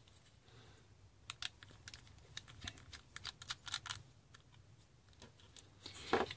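Faint, irregular clicks and ticks of a small screwdriver backing two small screws out of a laptop's metal hard-drive caddy, most of them between about one and four seconds in.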